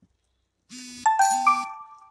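A two-note electronic chime: a short buzzy hiss, then a sharp ringing note about a second in and a higher one half a second later, each fading away.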